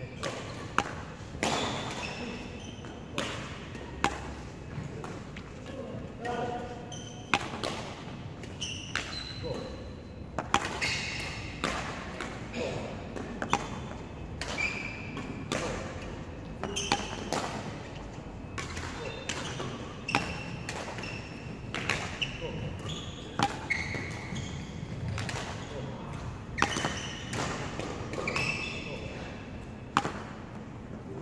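Badminton racket strings striking shuttlecocks in a rapid back-and-forth drill, a sharp crack about every second, with short high-pitched squeaks from shoes on the wooden court floor between the hits.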